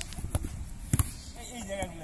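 Thuds of a football being struck and caught: a sharp one at the start, another shortly after, and a loud double thud about a second in, with voices in the background.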